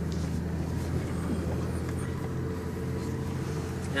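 A car engine and road noise heard from inside the cabin while driving, a steady low drone.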